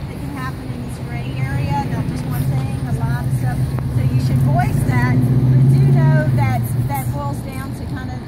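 Engine of a motor vehicle passing on the street: a low, steady drone that grows louder to a peak about six seconds in and then fades, under nearby voices.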